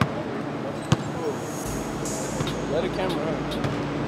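Gym ambience: distant voices, with a basketball bouncing on the court floor, one sharp bounce about a second in. A low hum comes in a little before the middle.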